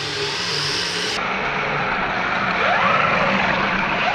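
Radio-controlled toy bulldozer crawling on concrete, its small electric drive motor and tracks running steadily. About two and a half seconds in there is a rising whine as a motor speeds up.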